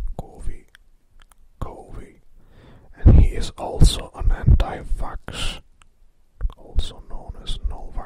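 A person whispering speech in uneven phrases, with short pauses between them.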